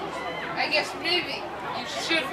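Several people chattering at once, with no clear words.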